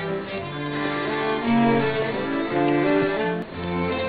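String ensemble music: bowed strings playing a slow melody in held notes over lower cello and bass lines, with a deeper bass note coming in near the end.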